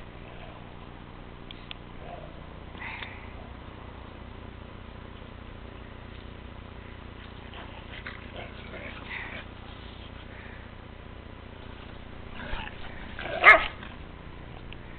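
Two dogs at play, with a few faint short yips through the middle and one loud bark about a second before the end.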